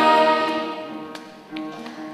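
A full orchestral chord is released and dies away in the hall's reverberation over the first second and a half, with a few light clicks and taps in the lull. Strings then quietly begin a new phrase near the end.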